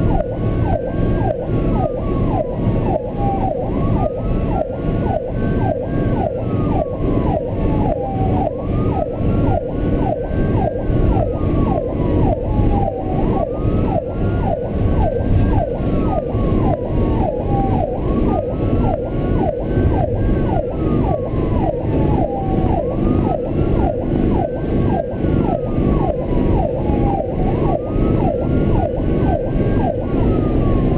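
Ambulance electronic siren on a slow wail, rising and falling about every five seconds, with a faster, rapidly repeating siren tone running underneath. Heard from inside the cab of the 2005 Chevrolet C4500 ambulance over its steady Duramax diesel engine and road noise.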